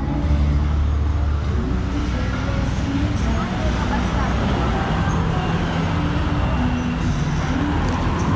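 Road traffic: cars and motorbikes passing on a street, with engines running and steady traffic noise throughout.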